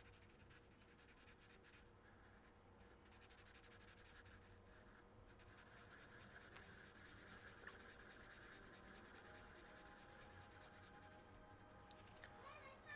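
Near silence, with the faint scratching of a felt-tip marker writing on a paper sheet.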